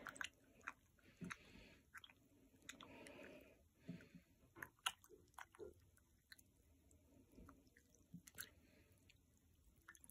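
Very faint swishing of water and soft squishing as a bar of wool soap is rubbed in a glass bowl of water, with scattered small clicks of the bar against the glass.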